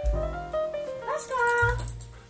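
A husky gives one pitched call in the second half that rises and then holds for under a second, over background piano music.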